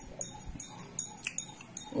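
A person chewing a mouthful of pounded yam and soup with the lips smacking: short wet clicks, about two or three a second. A voice starts at the very end.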